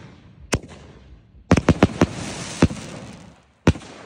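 Aerial fireworks launching and bursting: a string of sharp bangs, one about half a second in, a rapid cluster of several over a crackling hiss around the middle, and a last loud bang near the end.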